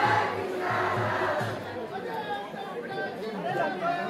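A large street-rally crowd, many voices shouting and calling out at once, in swells that are loudest at the start and ease off a little in the middle.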